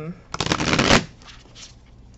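A deck of thick, stiff oracle cards riffle-shuffled: a rapid, dense run of card flicks starting about a third of a second in and lasting well under a second. The new cardstock is still stiff and not yet broken in.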